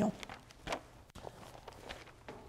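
Thin Bible pages being leafed through by hand: a few soft paper rustles, the loudest well under a second in.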